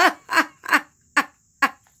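A person laughing: about five short bursts of laughter, each falling in pitch, a little under half a second apart.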